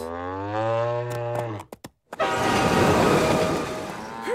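Cartoon sound effects: a cow's long moo falling in pitch, then after a short break a train rushing past, loud rumbling noise with a steady horn tone over it.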